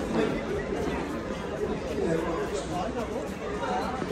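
Background chatter of many people talking at once, a steady babble of overlapping voices with no single talker standing out.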